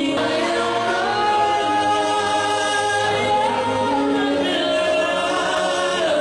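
A man singing a hamd, an Islamic devotional hymn praising God, in long held, ornamented notes. The melody steps up to a higher held note about halfway through.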